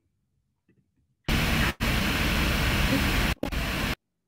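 A weird, loud static-like hiss from a newly joined participant's open microphone coming through a video call. It cuts in about a second in, drops out twice for a moment, and stops suddenly at the end.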